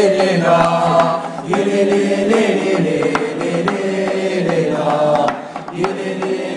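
A chanted song: voices singing long, held notes ('oh, yeah') over a percussive beat, with a short drop in loudness about five seconds in.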